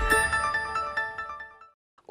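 Short electronic TV news transition sting: a bright chord of many steady ringing tones struck at once, fading away over about a second and a half.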